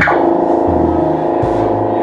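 Loud electronic music: a quick falling synthesizer sweep, then a held synth chord over two long low bass notes.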